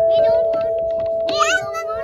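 Outdoor playground metallophone's metal tubes ringing on after a mallet strike, a steady chiming tone that fades only slightly. Over it, a small child's high voice twice.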